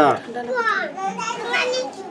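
Indistinct talking by voices in the background, following one short spoken word at the start.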